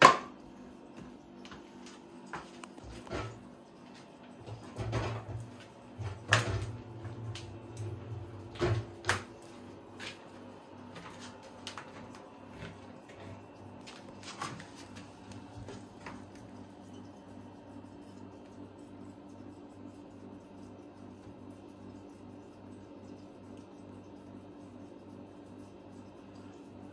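Scattered knocks and clicks from handling honey-extraction equipment (frames, tray and buckets), over a steady low hum. The knocks stop after about ten seconds, leaving only the hum.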